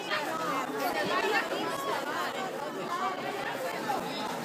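Several people talking at once: crowd chatter, with no single voice standing out.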